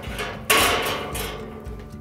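A metal wire grill grate set down in the steel drum of a drum smoker: one sharp metallic clank about half a second in that rings on and fades over about a second, after a few light knocks.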